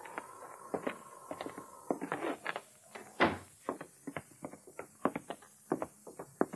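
Radio-drama sound effect of footsteps on a wooden floor: an irregular run of knocks and thumps, with one heavier thump about halfway through.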